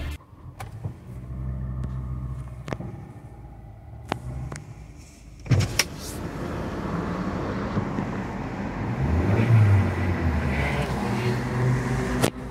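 Power window of a Kia Rio operated from the door switch: a click, then the window motor running for several seconds while a broad rushing noise grows inside the car cabin. Before that there is a steady low hum with a few light clicks.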